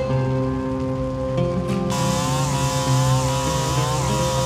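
Background music, with a two-stroke chainsaw coming in about halfway through and running steadily as it cuts along a felled log.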